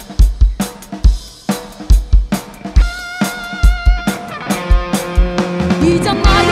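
A live band's drum kit opens the song with a steady beat of kick drum, snare and cymbals. About halfway through, electric guitar and bass guitar come in with held notes over the beat.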